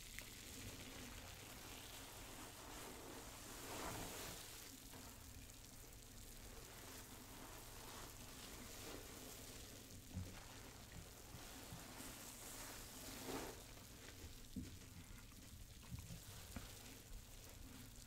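Faint, steady fizzing crackle of bubble-bath foam on the water, with a few soft swells and tiny clicks.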